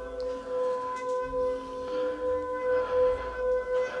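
A water-filled metal singing bowl, which the owner says is made of meteoritic iron, rubbed around its rim with a mallet. It gives a steady singing tone with overtones that swells and fades about two to three times a second.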